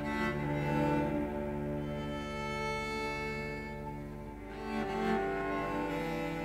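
Slow instrumental music with long held notes that change pitch a few times.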